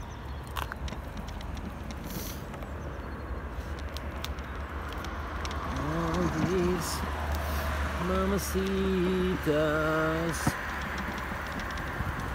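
Steady low rumble of wind and tyres while riding a bicycle downhill, with scattered light rattling clicks. From about six seconds in, a man sings a wordless tune in a few held notes for about four seconds.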